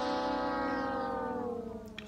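A man's long, drawn-out hesitation sound, "uhhh", held for about two seconds, its pitch sinking slowly as it fades.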